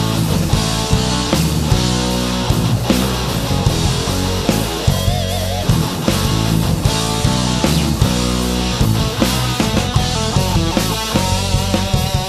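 Rock band recording: guitar playing over bass guitar and a drum kit, with no vocals in this passage.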